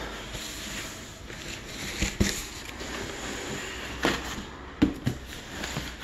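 Cardboard box and packing being handled and pulled apart: a low rustle with a few sharp knocks and taps, the loudest about two seconds in and again near the end.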